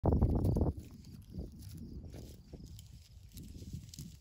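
Bighorn ram moving on dry, stony ground: a loud rough burst in the first split second, then soft scuffs and light clicks.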